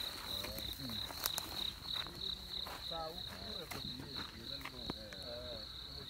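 Crickets chirping in a steady, rapidly pulsing trill, with faint voices talking in the background and a few light clicks.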